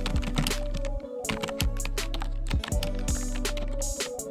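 Background music with a steady bass line, overlaid with a rapid run of keyboard-typing clicks, a sound effect as caption text types onto the screen.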